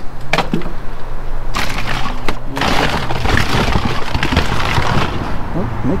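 Hands rummaging through a cardboard box of boxed cosmetics and plastic packaging: a few sharp clicks, then a dense spell of rustling and crinkling in the middle.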